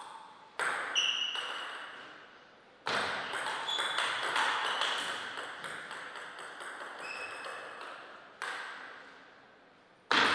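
Table tennis ball striking bats and the table, each hit a sharp click with a short ringing ping. Two hits come in the first second. A quick run of rally hits follows from about three seconds in, and one last hit comes near the end.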